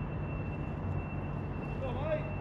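Steady low mechanical hum with a thin, high, steady whine above it. A faint voice comes right at the end.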